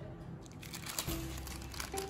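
Baking paper and foil-lined chip packets crinkling as the paper is peeled off a freshly iron-fused strip of packets.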